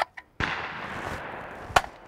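Sharp metallic clicks from a Century Arms SAS 12 box-fed semi-automatic 12-gauge shotgun being handled at its magazine and action, with one sharp click near the end. A burst of rushing noise starts about half a second in and fades away.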